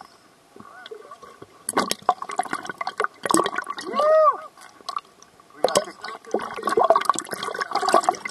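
Seawater splashing and gurgling around a camera bobbing half-submerged at the surface, in uneven bursts, with muffled voices and a single short rising-and-falling cry about four seconds in.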